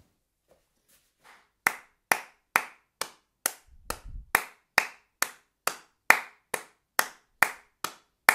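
Hand claps keeping a steady beat, starting about a second in and evenly spaced at a little over two claps a second, the unchanging pulse of the song.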